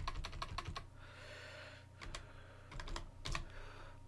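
Computer keyboard typing: a quick run of keystrokes, a pause of about a second, then another few short runs of keystrokes.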